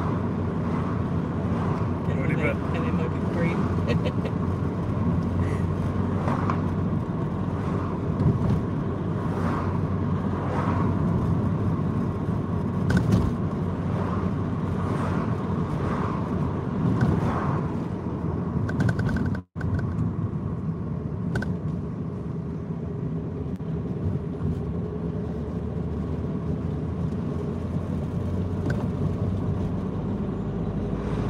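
Car cabin noise while driving: a steady low engine and tyre rumble, with a brief sudden cut-out in the audio about two-thirds of the way through.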